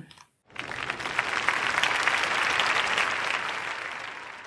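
Audience applauding: a dense patter of clapping that starts about half a second in, swells, then slowly dies away.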